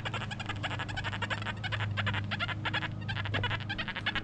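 XP Deus 1 metal detector with an HF coil, in the hot program at 14 kHz, giving rapid crackling chatter over a steady low hum: noise from the heavy electromagnetic interference at this spot.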